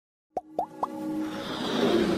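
Logo intro sting: three quick rising pops about a quarter second apart, then a music swell that builds in loudness.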